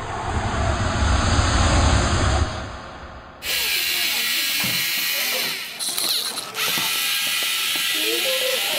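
Lego Mindstorms robot's gear motors whirring steadily as it drives across the mat, starting about three and a half seconds in, with a brief dip around six seconds. Before that, a low rumbling noise.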